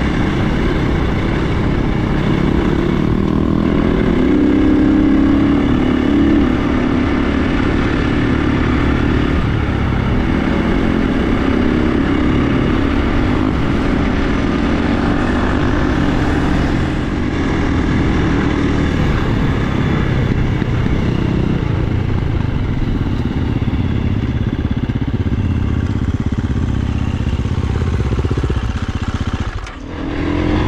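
KTM enduro dirt bike's engine running steadily at cruising speed on a gravel road, heard from the riding bike itself, swelling slightly a few seconds in and dipping briefly near the end.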